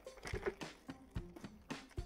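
Faint rustling and crinkling of a thin plastic bag being handled around a plastic model kit part, with a few soft ticks.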